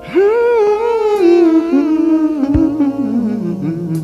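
Male voice singing a long wordless run through a vocal processor, starting high and wavering gradually downward, over a backing track of sustained keyboard chords. One sharp percussive hit comes about two and a half seconds in.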